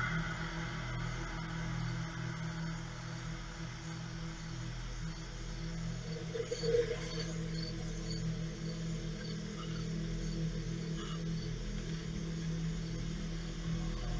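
A low, steady hum or drone, with one brief louder sound about seven seconds in.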